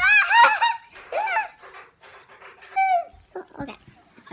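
A young child laughing: a quick run of ha-ha bursts at the start, then another short laugh about a second in.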